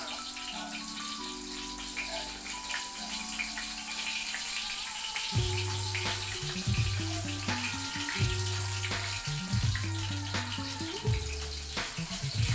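Background music with a bass line entering about five seconds in, over the steady sizzle of food frying in a wok on a gas stove and light clicks of a spatula against the pan.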